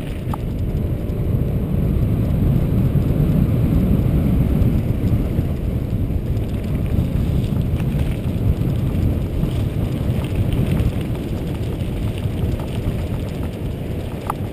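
Steady low rumble of a mountain bike rolling down a dirt and gravel road: wind buffeting the camera's microphone and tyres on loose gravel. It swells a couple of seconds in.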